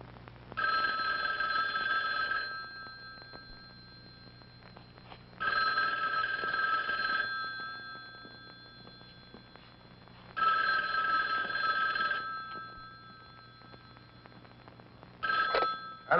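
Telephone bell ringing three times in a steady on-off pattern, each ring about two seconds long, with a fourth ring cut short near the end.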